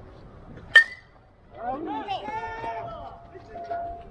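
A metal baseball bat hitting a pitched ball: one sharp, ringing ping under a second in, followed by players shouting.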